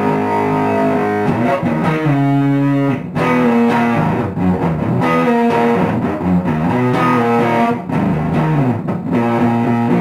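Electric guitar, a modified Squier Jazzmaster, played through a Bearfoot Candiru Apple Fuzz pedal into a Marshall MG30FX amp, fuzzed and distorted. A held chord rings, then about a second in a riff of separate notes begins, with some notes sliding down in pitch about three-quarters of the way through.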